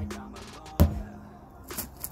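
Sledgehammer striking a large rubber tyre: one heavy, dull thud just under a second in, with the tail of the previous strike at the very start. A steady low tone of background music runs underneath.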